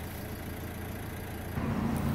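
Low, steady rumble of an idling car engine, with a steadier low hum joining about a second and a half in.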